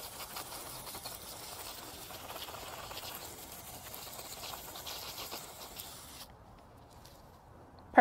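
Garden hose pistol-grip nozzle on its jet setting, a steady hiss of water spraying onto a dug dahlia tuber clump to wash the soil off. It cuts off abruptly about six seconds in.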